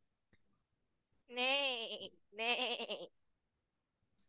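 Two bleat-like calls with a wavering pitch, each under a second long, one right after the other: a goat's 'meh, meh' as sung in a farm-animal song.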